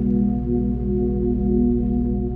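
Ambient sleep music tuned to 432 Hz: a steady drone of held low tones that waver gently, with no beat or melody.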